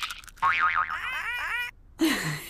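Cartoon computer-game sound effects: a warbling tone, then a quick run of springy boing glides, each swooping upward in pitch. The run stops abruptly a little before the end.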